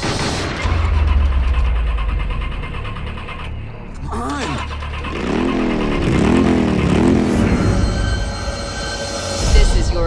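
A motor starting with the turn of a key and running with a deep, heavy rumble for several seconds. Then comes a run of repeated rising-and-falling pitched wails.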